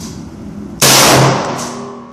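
A single shot from a Romanian PSL semi-automatic rifle in 7.62x54R, a little under a second in: a sudden, very loud crack with a short echo that dies away over about half a second.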